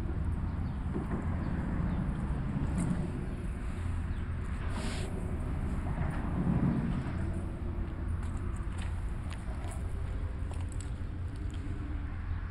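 Steady low rumble of distant road traffic, with a brief rushing noise about five seconds in.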